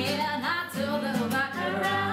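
Women singing with a nylon-string classical guitar accompaniment.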